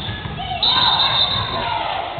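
Children's basketball game in a gym: kids' voices shouting and calling, with a ball bouncing and thudding on the hardwood floor in an echoing hall.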